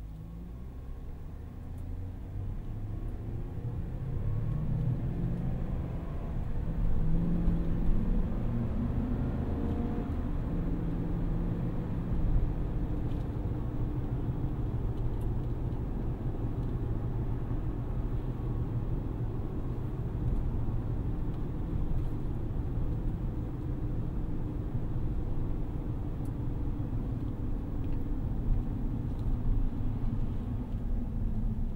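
The 6.2-litre V8 of a 2023 Chevrolet Silverado ZR2 Bison is heard from inside the cabin. Its note climbs in pitch and gets louder over the first ten seconds or so as the truck accelerates. It then settles into a steady cruise with low engine and tyre rumble.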